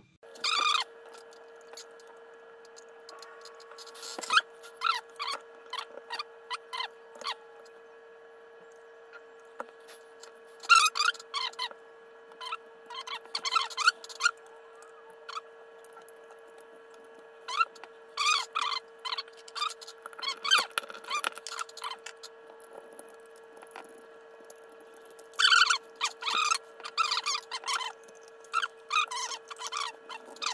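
Hot glue gun squeaking in irregular bursts of short squeaks as the trigger is squeezed and the glue stick is pushed through, over a steady background hum.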